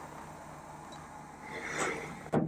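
Mostly quiet room tone as soda is sipped from glasses, with a soft breathy drinking sound swelling briefly near the end.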